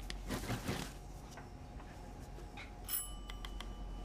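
A small bell rings once, a bright ding about three seconds in that fades within a second, over steady kitchen room tone. In the first second there are a few soft pats, as floury hands are brushed off.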